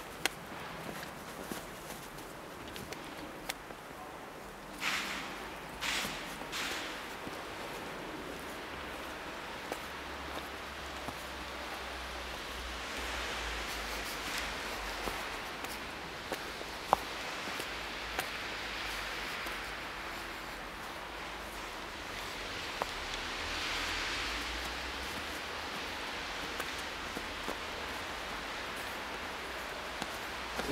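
Quiet outdoor ambience: low wind rumble on the microphone and a faint hiss, with a few brief rustles about five to seven seconds in and scattered small clicks.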